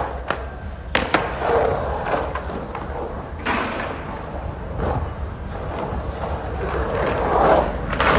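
Skateboard wheels rolling and carving through a concrete bowl, the rolling noise swelling and fading in waves as the skater pumps the walls. There are a few sharp clacks about a second in, and the loudest swell comes shortly before the end as the board rides up to the coping.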